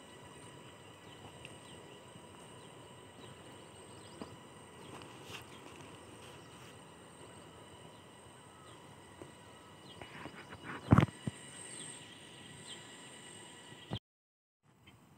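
Faint outdoor ambience with steady, high insect drone in the crops. About eleven seconds in, a few clicks end in one sharp, loud knock.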